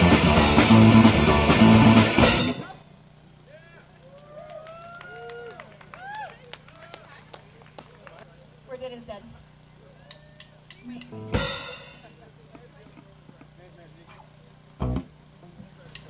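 Live punk rock band playing loud, stopping abruptly about two and a half seconds in. Then a pause with a steady low hum from the amps, a few voices, scattered clicks, one sharp ringing cymbal-like hit a little after eleven seconds and a short low drum thump near the end.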